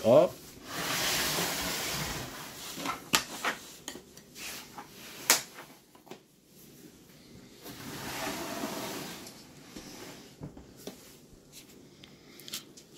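Autel hard plastic carrying case handled and opened on a wooden table: the case scraping and rubbing as it is moved, several sharp clicks as its plastic latches are flipped open, the loudest a little over five seconds in, then more rubbing as the lid is swung open.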